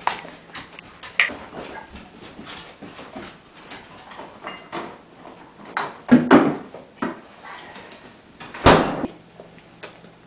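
Dogs' claws ticking on a tiled kitchen floor as they move about. Two louder, brief noises come about six and nine seconds in.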